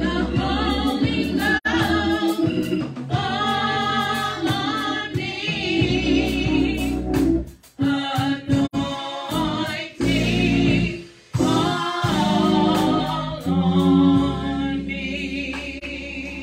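A woman singing a gospel song into a microphone, her sustained notes wavering with vibrato, over sustained organ or keyboard chords, with brief breaks between phrases.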